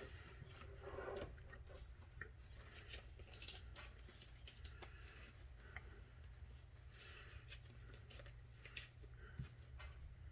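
Faint handling sounds of trading cards and plastic card sleeves: light rustles, scrapes and small clicks scattered throughout, with a sharper click near the end.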